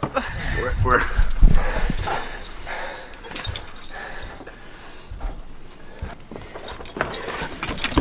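A dog making a few short vocal sounds near the start, over thumps and rumbling from a handheld camera being jostled about.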